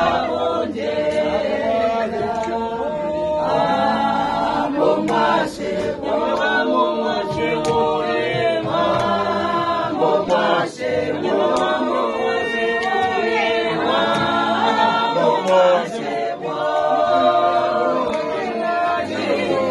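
A group of voices singing unaccompanied in harmony, held notes in phrases, with a few scattered hand claps.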